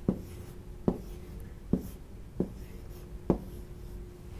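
A pen writing on an interactive touchscreen whiteboard: five sharp taps of the pen tip against the screen, roughly one a second, as the numbers are written.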